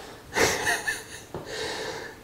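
A man's breathy, mostly voiceless laugh, a burst of short exhalations that fades into a softer breath.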